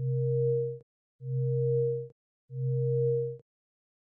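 Three identical electronic beeps with short gaps between them, each a steady low tone with a fainter higher tone above it and no change in pitch. They are an animation sound effect, one for each dashed asymptote line drawn onto the graphs.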